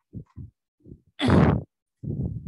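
A person's short, loud breath into a headset microphone, a little over a second in, after a few soft low sounds.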